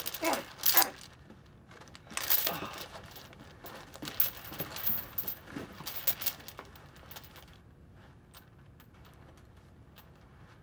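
A man grunting and straining as he struggles against his restraints, with rustling and crinkling from the bindings, in several bouts over the first seven seconds or so before it goes faint.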